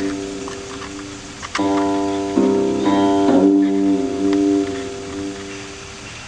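Guqin, the seven-string Chinese zither, played slowly: a few plucked notes, each left ringing and fading away, some with a wavering or downward-sliding pitch.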